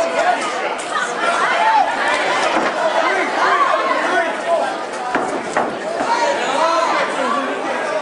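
Crowd of spectators at a cage fight, many voices shouting and talking over one another, with a sharp knock a little past five seconds in.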